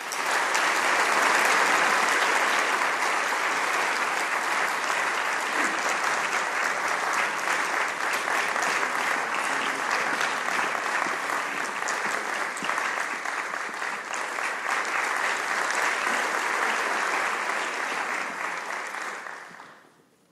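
Audience applauding steadily, fading out just before the end.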